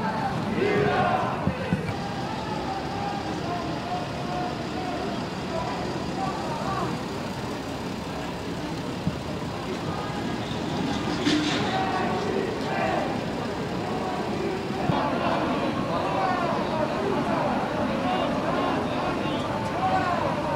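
Street ambience of indistinct voices from people and a crowd over steady traffic noise, the voices busier in the second half, with a brief sharp sound about eleven seconds in.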